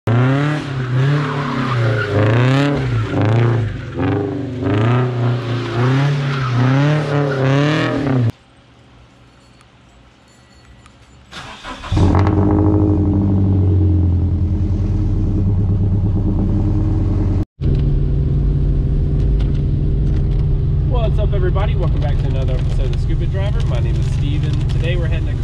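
Car engine revving up and down again and again for about eight seconds. After a short quiet gap a Toyota 86's flat-four starts suddenly and settles into a steady idle. A voice comes in over the engine near the end.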